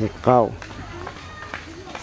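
Speech only: one short spoken word near the start, then faint talk in the background.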